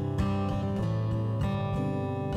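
Acoustic guitar strummed, its chords ringing out with no voice over them.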